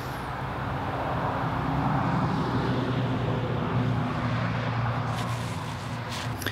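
An engine passing by: a steady low drone that swells to its loudest around the middle and eases off toward the end.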